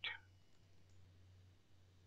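Near silence with faint computer-keyboard clicks from typing, over a low steady hum.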